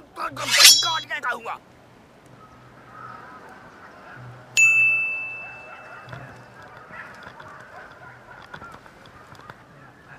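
Edited-in comedy sound effects: a short, shrill cry about half a second in, then a single sharp ding about four and a half seconds in that rings out for about two seconds, over a low background murmur.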